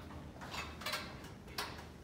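A few soft, irregularly spaced clicks and taps over a low room hum: handling and movement noise while the camera is carried round the squat rack.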